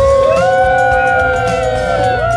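Several voices singing long held notes together.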